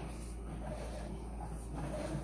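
Steady low hum with faint scuffing and light knocks as a sewer inspection camera's push cable is fed along the drain line.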